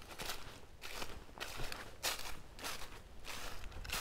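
Footsteps through dry fallen leaves on a woodland floor: a soft rustle with each step at a steady walking pace, about two steps a second.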